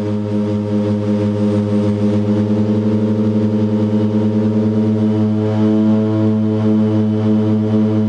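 The Twin Otter DHC-6's two PT6A turboprop engines and propellers droning steadily in cruise, heard from inside the cabin. The drone throbs with a beat between the two propellers that runs quicker around the middle and slows to a slow pulse in the second half.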